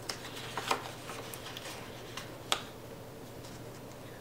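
Sticker paper being peeled and pressed onto a planner page by hand: a scatter of soft crinkles and light clicks, the sharpest about three quarters of a second in and again about two and a half seconds in.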